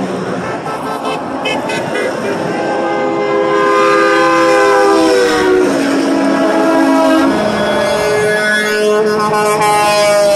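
Semi-truck air horns sounding as big rigs pass close by, over the noise of highway traffic. One long horn chord starts about three seconds in and drops in pitch as the truck goes by. A second horn sounds from about eight seconds in.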